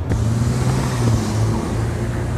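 City street traffic: a vehicle engine's low, steady drone over a wash of street noise.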